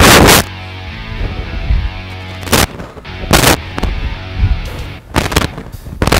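Background music broken by four short, hard bursts of breath noise blowing on a clip-on lapel microphone as a man exhales through sit-ups; the first, right at the start, is the loudest, the others come about two and a half, three and a half and five seconds in.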